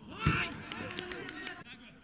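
Footballers shouting on the pitch, with a sharp thud about a quarter second in as the shouts start, then fading calls.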